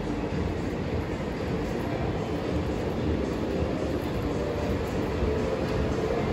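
Steady, low rumbling din of a large casino hall, with faint tones mixed into it.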